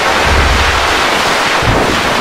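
Heavily distorted, overdriven effects-processed audio: a harsh, dense wall of noise with loud low booms coming and going.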